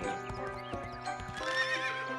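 Cartoon horse sound effects: hooves clip-clopping and a horse whinnying, over background music.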